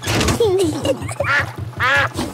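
Cartoon duck quacking, with background music and a low, quick, even pulsing underneath.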